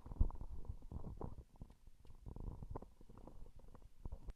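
Irregular muffled low thumps and rumbling: movement and handling noise close to the microphone.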